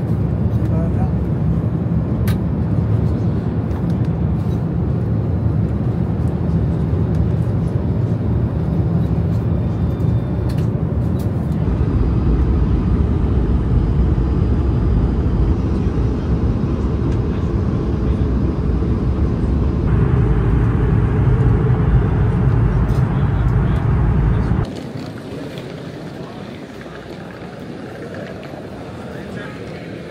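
Steady low drone of an airliner cabin in flight: engine and air-conditioning noise. Near the end it gives way to the much quieter hum of an airport terminal hall.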